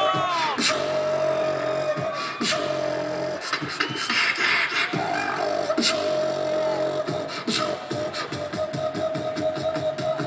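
A beatboxer performing, making kick-drum, snare and hi-hat sounds with his mouth in a steady rhythm while holding a steady vocal note over them.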